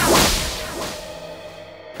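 Whoosh sound effect marking a scene transition in a TV drama: a sharp swish that peaks at once and fades away over about a second and a half.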